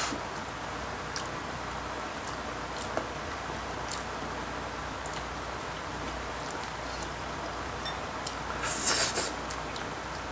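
Light scattered clicks of metal chopsticks and soft rustling of gloved fingers picking the bones out of a piece of braised cutlassfish, over a faint steady background hiss. A brief louder rustle comes near the end.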